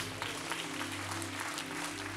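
A congregation applauding, steady and fairly soft, over quiet sustained background music.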